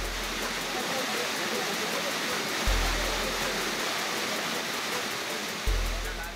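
A waterfall rushing steadily, with a deep bass note from background music sounding about every three seconds.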